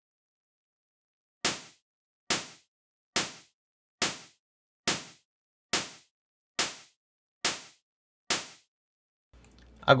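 Synthesized psytrance snare made from Serum's noise oscillator, saturated and low-cut below about 150–160 Hz. It is played nine times at an even pace of a little over one hit a second, starting about a second and a half in. Each hit is a sharp, noisy crack that dies away within a third of a second.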